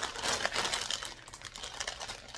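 Clear plastic bag crinkling as it is handled, a dense crackle of small clicks that is louder in the first second and dies down toward the end.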